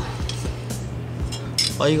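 Light clicks and clinks of small model-car parts (a plastic fuel-filler piece against the die-cast metal body) being handled and fitted, a few scattered taps, over quiet background music.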